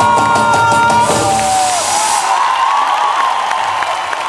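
Live orchestra holding a final note that ends about a second in, followed by a concert audience cheering.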